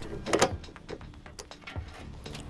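Metal clicks and knocks from a folding ramp's hinged support rod and leg frame being unfolded, with one sharp clack about half a second in. Soft background music underneath.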